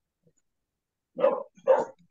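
A dog barking twice in quick succession, about half a second apart, starting about a second in.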